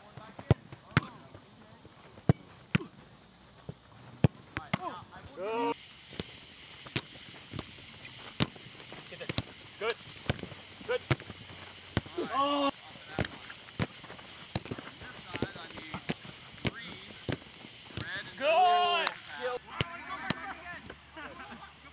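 Soccer balls being kicked and hitting the keeper's gloves and the turf: a run of sharp thumps about once a second, with a few short shouts among them.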